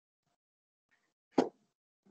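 Silence broken once, about one and a half seconds in, by a single short, sharp plop-like sound.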